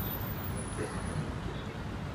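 Steady roadside traffic noise: a continuous low rumble of passing vehicles on a city street.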